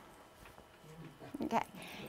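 A quiet pause in a room, with faint audience sounds about a second in, then a woman saying "okay" near the end.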